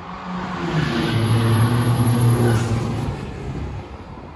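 Vehicle engine revving as an outro sound effect. It swells over the first two seconds, drops to a lower steady note, and fades out near the end.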